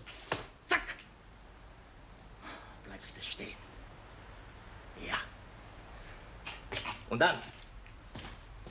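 Crickets chirping in a fast, even, high pulse that runs on steadily, with a few short knocks and rustles of movement.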